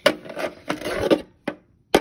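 Plastic toy figures rubbing and knocking against a wooden dollhouse, in a few short bursts of scraping noise over the first second and a half.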